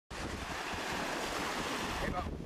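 Sea surf washing on the shore, with wind buffeting the microphone in a low rumble. It cuts in suddenly just after the start and then runs on as a steady rush.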